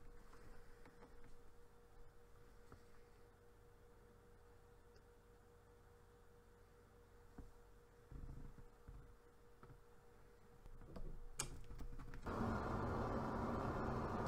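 Furnace gas valve on propane clicking open, then the burner lighting off the glowing hot surface igniter and burning with a steady rushing sound. Before that, a faint steady hum with a single clear tone while the igniter heats.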